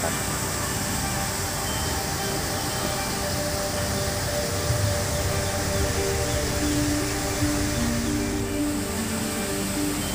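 Background music with slow, held notes over a steady hiss.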